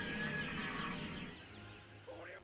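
Faint background music from the anime's soundtrack, fading toward near silence near the end.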